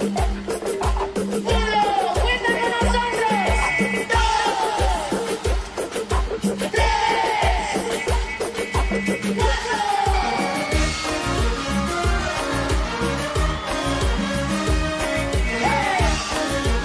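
Tejano band playing live: dance music over a steady kick drum about twice a second, with gliding melody lines above. About ten seconds in, a moving bass line comes to the fore.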